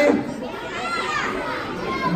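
Audience of children murmuring and calling out, with scattered young voices in a large hall.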